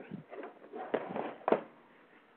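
Faint rustling and two soft clicks, heard over a telephone line, the second click about a second and a half in, as someone handles something while looking up a reference.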